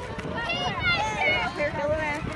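Several children's high voices shouting and chattering over one another, with a low rumble underneath.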